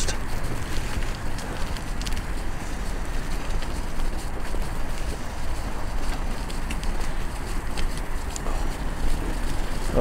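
Wind buffeting the microphone over the steady rumble of bicycle tyres rolling along a muddy dirt path, with a few faint clicks and rattles from the bike.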